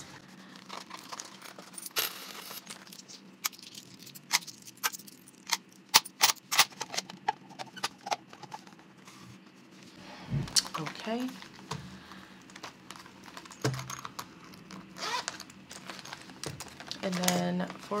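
Coins clinking in a clear acrylic stacking coin tower as it is handled and set down: a run of sharp, separate clinks and clicks that thins out about halfway through.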